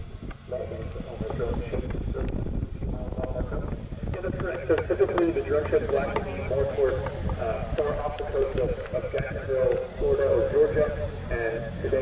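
Indistinct voices talking over a steady low background rumble.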